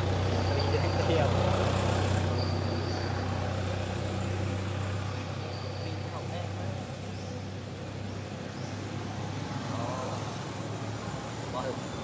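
Low, steady engine rumble of a nearby motor vehicle, fading out about halfway through, with faint voices in the background. A few short high-pitched chirps come in the first half.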